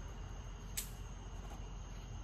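Small lipstick packaging being handled: one short crisp click about three-quarters of a second in, over quiet room tone with a steady high-pitched whine.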